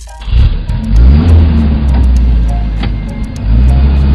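Engine sound effect for a toy tow truck. It revs up a moment in and again near the end, and runs loudly in between, over background music with a ticking beat.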